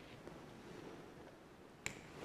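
Quiet church room tone with one sharp click about two seconds in.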